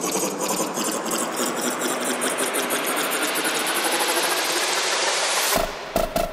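Techno build-up: a dense, machine-like rattle of fast ticking percussion under a noise riser that brightens and climbs slowly over about five seconds, then breaks off near the end into a few sparse hits.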